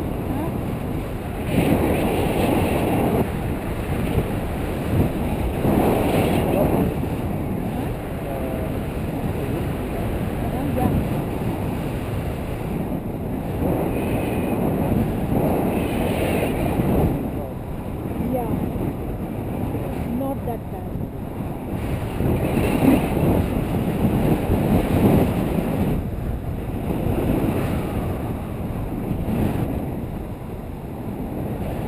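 Wind rushing over an action camera's microphone on a selfie stick in a paraglider's airflow, a loud low rushing that swells and eases every few seconds.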